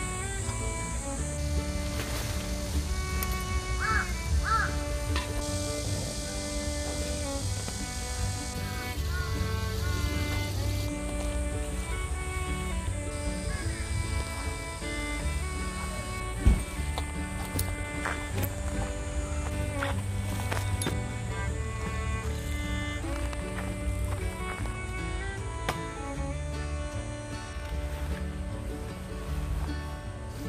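Background music: an instrumental piece of held notes that change from one to the next, with one brief sharp click about halfway through.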